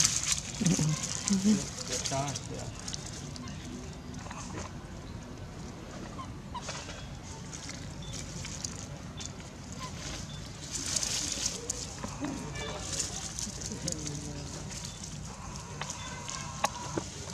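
A few short voice-like calls in the first two seconds, then a steady outdoor background hiss with light rustling.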